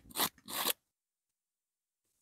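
Two brief rasping scrapes, a few tenths of a second apart.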